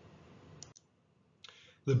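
Faint room tone, then a short click about three-quarters of a second in, followed by a moment of dead silence and one or two more clicks just before a man's voice resumes. This is the sound of an edit or pause in the recording at the slide change.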